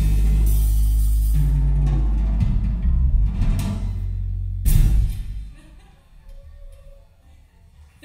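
A band ending a song: a held, bass-heavy chord with drums, closing on one last loud hit about five seconds in that rings out and dies away, leaving only faint room noise.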